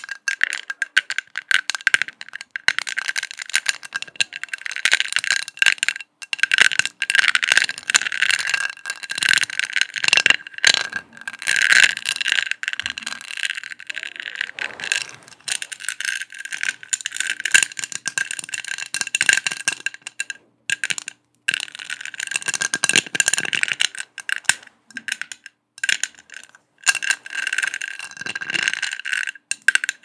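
Long acrylic fingernails tapping fast on a round perforated gold metal disc with a honeycomb pattern, close to the microphone. A continuous clatter of quick taps with a metallic ring, stopping briefly a few times.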